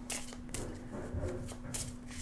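A deck of large tarot cards being handled and shuffled in the hands, with a few soft, sharp card clicks and rustles.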